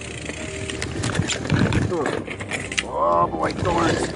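Loaded mountain bike rattling and clattering over rough, brushy singletrack, with many sharp clicks and knocks. In the second half a man makes short wordless vocal sounds.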